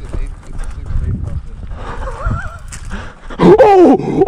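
Footfalls and handling knocks of a handheld camera carried at a run through dry grass. About two seconds in comes a short wavering call, and near the end a man's loud, drawn-out excited yell.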